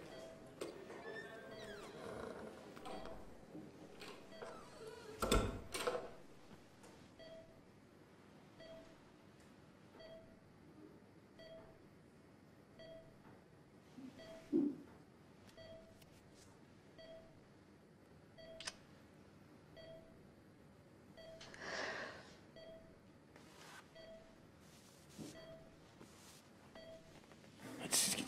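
Bedside patient monitor beeping steadily, one short tone a little faster than once a second, the pulse tone that keeps time with the patient's heartbeat. A thump about five seconds in is the loudest sound, with some soft rustling later.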